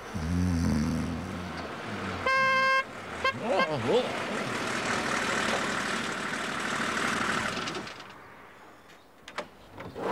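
A vehicle horn gives one short, steady toot about two seconds in. A fire engine's motor then runs as it drives up, fading out near the end.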